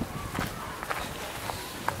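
Footsteps of a person walking on a paved path, about two steps a second.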